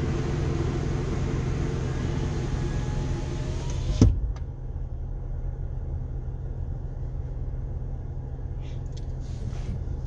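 Steady low hum of a car, heard from inside the cabin, with a rushing hiss over it. About four seconds in a sharp click sounds and the hiss cuts out, leaving the low hum.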